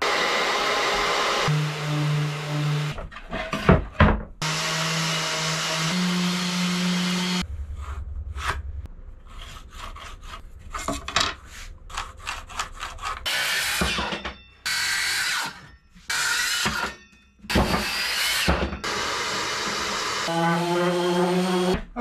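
Circular saw cutting plywood in several runs of a few seconds each, the motor holding a steady hum under the cutting noise. A quieter stretch of wood handling and pencil-marking clicks comes in the middle.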